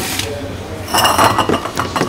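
Hard objects clinking and clattering on a kitchen counter for about a second, starting about a second in, with a short ringing clink among them.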